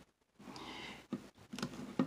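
Faint clicks and light rustling of hands handling a plastic action figure, with a sharper click near the end.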